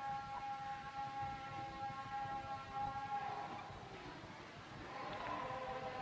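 The lingering echo of a preacher's voice through a public-address sound system: a steady ringing tone that fades away about three seconds in, with faint ringing building again near the end.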